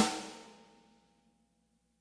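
A single sampled snare drum hit from Native Instruments Studio Drummer, sounding as the MIDI note's velocity is changed. It strikes sharply and rings out, fading within about half a second.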